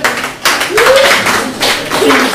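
A small audience clapping, with a voice calling out over it about a second in.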